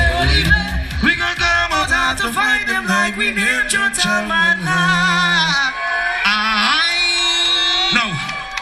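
Live soca music with singing, played loud through a stage sound system. About a second in the bass and beat drop out, leaving the melody and long held vocal notes.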